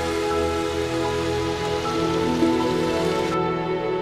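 Soft background music of sustained, held notes over a steady hiss, which cuts off suddenly near the end while the music carries on.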